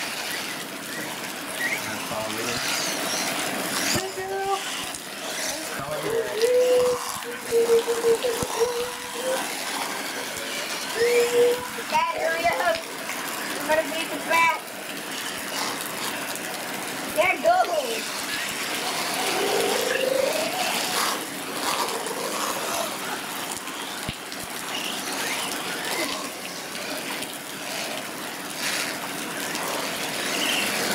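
Indistinct voices of people talking and calling out, with one voice holding a long call about six seconds in, over a steady outdoor background hiss.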